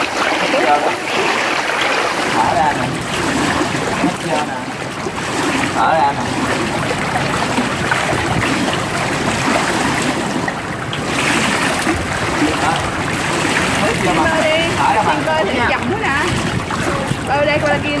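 Pool water sloshing and splashing continuously as children kick mermaid tails in the shallows at the pool's edge, with voices talking now and then, mostly near the start and toward the end.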